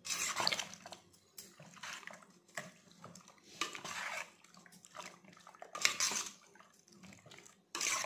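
Metal spoon stirring fish pieces through a wet spice marinade in a stainless steel bowl: wet squelching and sloshing in repeated strokes, about one a second.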